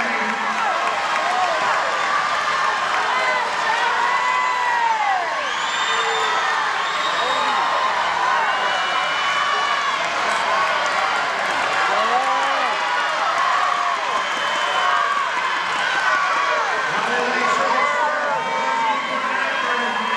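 Swim-meet crowd cheering and shouting, many voices overlapping without a break, with some high-pitched yells, in the reverberant hall of an indoor pool.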